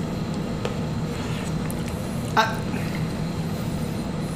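Steady low hum of a room's air-conditioning, with one brief voice sound about two and a half seconds in.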